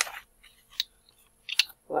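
Small boxed oil bottles and newspaper packing being handled: a few short clicks and light rustles.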